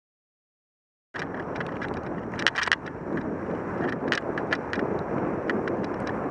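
Silence for about a second, then a sudden start of wind buffeting the microphone of a camera riding on a moving bicycle, with scattered sharp clicks and rattles.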